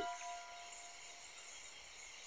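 Faint background of the cartoon's soundtrack during a pause: a soft held note that fades out about a second in, over a faint steady high hiss.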